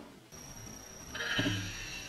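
A talking hamster toy plays back a short, high-pitched "A!" cry a little over a second in. A thin, steady high tone runs underneath.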